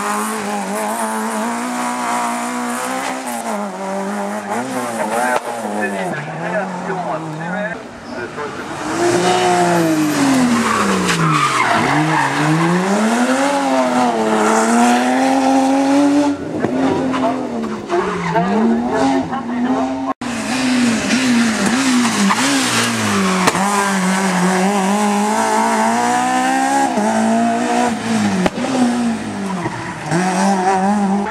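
Rally car engines racing through hairpins one after another, revving hard and dropping through gear changes, with tyres squealing; a Peugeot 205 comes first. The sound jumps louder about 8 seconds in and breaks off for an instant about 20 seconds in.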